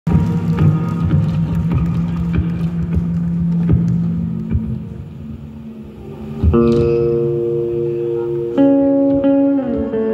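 Live post-rock band with guitars, bowed double bass and violin playing. A dense, low, choppy passage fades out by about halfway, then sustained held notes come in, with a second entry near the end and a short downward slide just before it.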